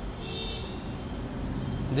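Steady low background rumble, with a faint high whine about half a second in and a man's voice starting just at the end.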